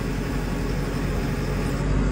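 Diesel engine of a JCB 3CX backhoe (74 hp JCB EcoMax) running steadily, heard from inside the cab, while the backhoe dipper is worked out on its hydraulics.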